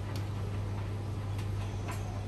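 Laundry machines running, a Beko WTK washing machine in front: a steady low hum with three sharp clicks.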